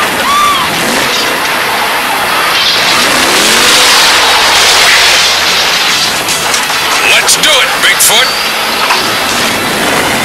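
Cartoon sound effect of a monster truck engine revving, a noisy roar that swells in the middle. A quick series of sharp knocks comes about seven to eight seconds in.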